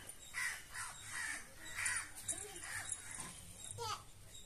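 A crow cawing several times in quick succession.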